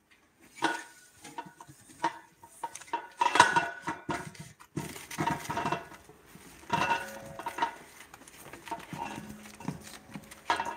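Metal tongs scraping and knocking on a foil-lined sheet pan while roasted potatoes drop into a stainless steel pot, in clattering bursts every second or two with a metallic ring.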